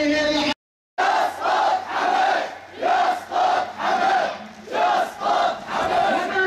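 A crowd of marchers chanting slogans in unison, in short rhythmic phrases with brief dips between them. A short gap of silence from an edit comes just before the chanting starts, about a second in.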